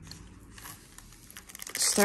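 Quiet rustling and scraping of hands handling a white foam packaging sleeve around a bamboo pen box.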